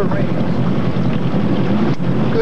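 Motorboat engine running steadily, with wind rushing over the microphone.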